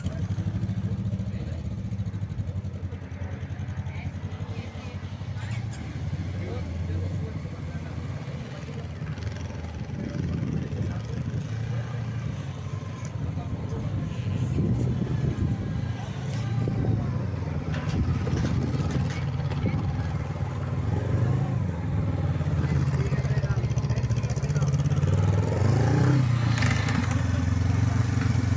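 Honda CB500F's parallel-twin engine running at low speed, its note swelling and easing with the throttle as the motorcycle weaves through a cone slalom, and growing louder as it comes close near the end.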